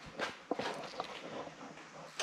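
Footsteps on a workshop floor: a few soft scuffs and light knocks at an uneven pace.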